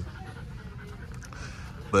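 A micro bully dog panting over a steady low hum of room ambience.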